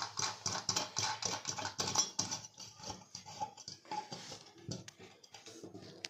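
Stainless steel sink strainer being twisted back and forth in the drain hole of a steel kitchen sink: quick metal-on-metal scraping and clicking, busy for the first three seconds and sparser after, with a sharp click at the end.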